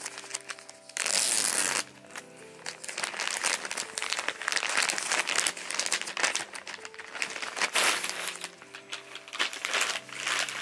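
Plastic poly mailer bag crinkling and rustling as it is torn open by hand, with a loud burst of rustling about a second in and another near the end. Soft background music plays underneath.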